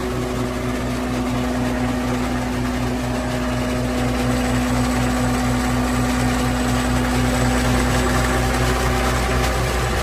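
Caterpillar diesel engine of a CS-563E vibratory smooth drum roller running at a steady speed, heard close up at the open engine bay, with an even low pulsing and a steady hum.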